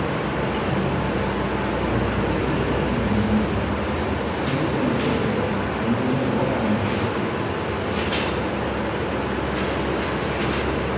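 A steady, loud rushing rumble of noise, of the kind made by a passing train or heavy traffic, that swells in just before and holds at an even level, with a few brief hissing ticks in it.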